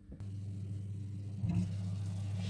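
Steady low hum and rumble of a pot of water at a rolling boil on a glass-top hob, with a brief louder knock about one and a half seconds in as the glass lid is lifted.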